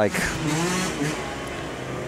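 Engine of an off-road side-by-side vehicle running in the background, a steady engine-and-exhaust sound under a brief word of speech at the start.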